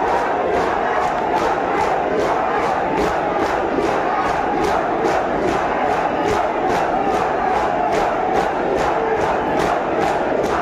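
A crowd of Shia mourners doing matam: hand slaps on the chest in unison, a steady beat of about two to three strokes a second, under many men's voices chanting together.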